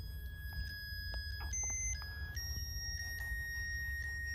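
Musical crib mobile playing a slow electronic tune of clear, beep-like notes, each held from about half a second to over a second and stepping between a few nearby pitches.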